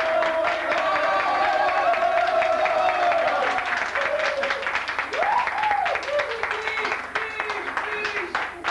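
A small group clapping their hands, with voices over it. One voice holds a long note that fades out about three and a half seconds in, and a call swoops up and down about five seconds in.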